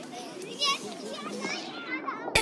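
Several children's voices chattering and calling over one another in the background, with one brief louder high-pitched call about a third of the way in.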